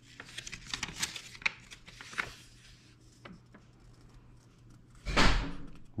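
Paper rustling and crinkling as a folded instruction sheet is handled and opened out, busiest in the first two and a half seconds, then a few light clicks. Just after five seconds comes a short, louder rush of noise along with a muttered "uh".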